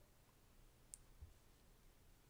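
Near silence: room tone, with one faint sharp click about a second in.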